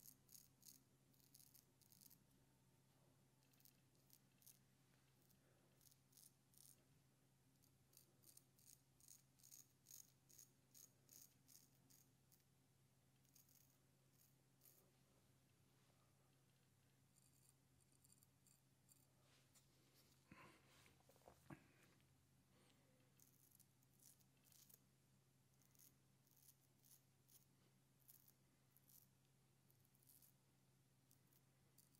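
Faint, crisp crackling scrape of a Max Sprecher 8/8 Spanish-point straight razor cutting five days of beard stubble through lather, in runs of short quick strokes, over a low steady hum. A brief soft pitched sound comes about two-thirds of the way through.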